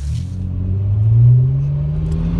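BMW 335i's twin-turbo N54 inline-six running, heard from inside the cabin. It starts abruptly, the engine note climbs a little over the first second and then holds steady.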